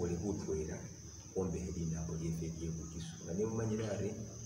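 A man talking in three stretches with short pauses, over a steady high-pitched tone that runs without a break.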